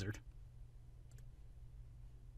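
A single faint computer mouse click about a second in, over a low steady hum.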